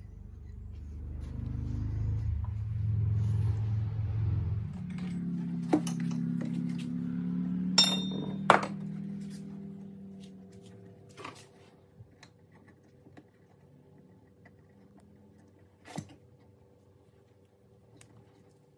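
Clicks and metal clinks from handling a lawnmower recoil starter's pulley and new pull cord, the two sharpest about eight seconds in, one with a short ringing. Under them, a low rumble of unknown source fades out by about ten seconds in. After that only a few light clicks are heard.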